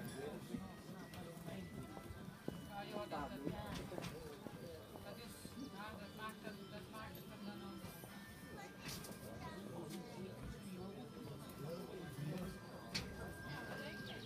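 Faint hoofbeats of a pony cantering on grass, under distant voices and background music.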